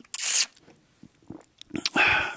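Mouth noises of a man tasting tea: a short breathy rush of air near the start, then a few faint lip clicks.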